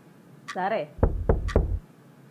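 Three heavy knocks in quick succession, each with a deep thud, about a second in. A clock ticks about once a second underneath.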